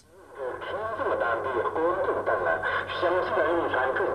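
A voice making an announcement over a public-address loudspeaker, thin and tinny, with only the middle of the voice coming through; it starts about a third of a second in.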